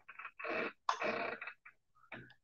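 Soft breathy laughter: a few short, irregular puffs of exhaled breath without a voiced tone, just after a startled "whoa".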